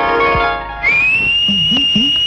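Film background score: a held chord fades out, and about a second in a single high whistle tone enters, sliding up briefly and then holding steady. Under it, low drum strokes that bend in pitch begin to beat a rhythm.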